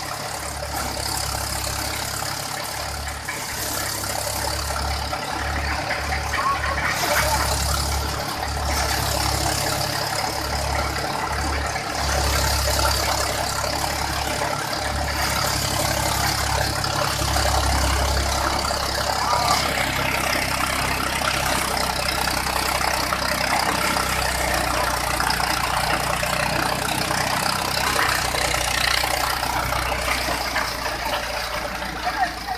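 Mahindra paddy thresher running steadily with the engine that drives it: a continuous mechanical noise with a low, uneven rumble underneath.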